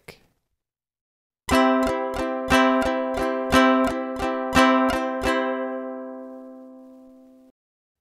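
Ukulele strummed with all down strums in 6/8 time: even strums in four groups of three, the first of each group accented, starting about a second and a half in. The last chord rings on and fades for about two seconds before it is cut off.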